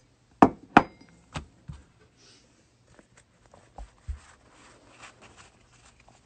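A stack of trading cards knocked against a tabletop, two sharp taps about half a second apart near the start and softer knocks after, then the light rustle of the cards being handled.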